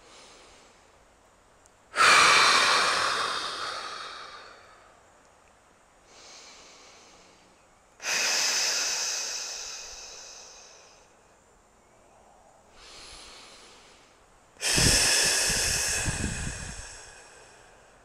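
A woman breathing: three forceful, hissing exhalations, each starting suddenly and fading away over two to three seconds, with quieter inhales between them. These are core-activation breaths, the belly drawn in on each exhale to engage the transverse abdominis.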